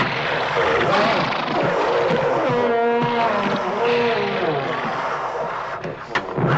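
Film monster sound effects: creatures roaring and screeching in a fight, with one long drawn-out cry about halfway through, over a dense noisy wash.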